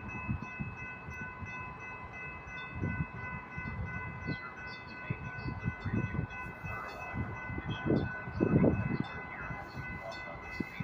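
Railroad grade-crossing warning bells ringing steadily, with a low, irregular rumble underneath that swells loudest about eight to nine seconds in.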